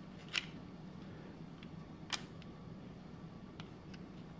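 Faint hand-work noises on a Magpul PRS Gen 3 rifle stock as a QD sling cup is fitted and its screw started: two small sharp clicks, one about a third of a second in and a louder one about two seconds in, with a few softer ticks over a low steady hum.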